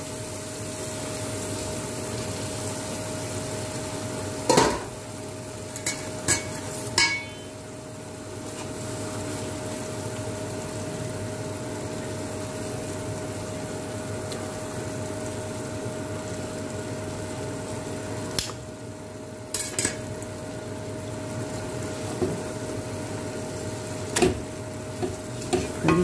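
Chicken and tomato-spice sauce sizzling steadily in a cooking pot. A wooden spoon knocks against the pot several times. A steady hum runs underneath.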